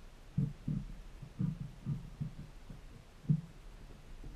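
Dull low thumps of potatoes being handled and pressed down on a table, irregular, about six of them with the loudest near the end, over a faint low steady hum.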